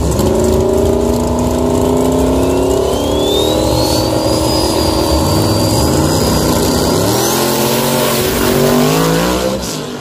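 Drag racing car engines running at high revs at the starting line. Their pitch steps up and climbs about two thirds of the way through as they pull away, with a thin high whine rising and then holding through the middle.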